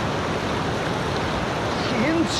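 Steady rushing of a fast-flowing river running over rocks and rapids.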